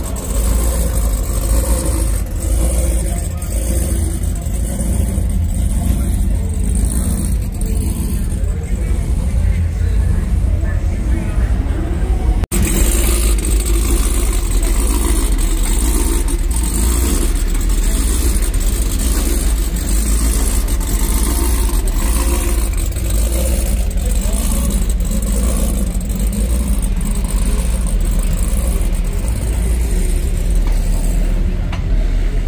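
Loud car-show din: a heavy, steady low rumble with an even beat about every 0.7 seconds and voices over it, dropping out for an instant about twelve seconds in.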